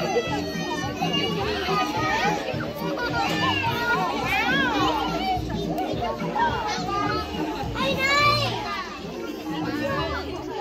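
A crowd of young children chattering and calling out excitedly, their high voices overlapping, with music playing underneath.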